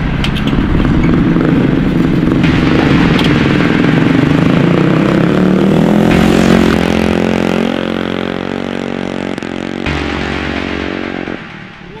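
Engine of a large tracked off-road scooter running and revving, rising in pitch about halfway through and easing off near the end.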